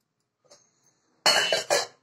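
A person coughing twice in quick succession, loudly, a little over a second in.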